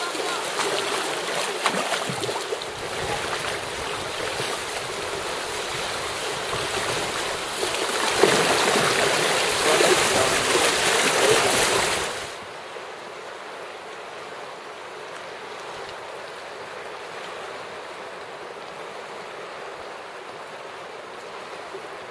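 Rushing whitewater of river rapids heard from inside a canoe, a loud steady rush that swells for a few seconds before cutting off abruptly about halfway. It is followed by a quieter, steady rush of the rapids.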